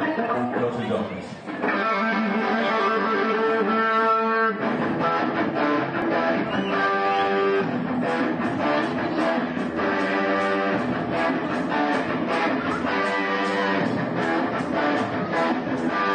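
A live rock band starts playing about a second and a half in: electric guitar chords over bass guitar and drums, with the chords changing every second or two.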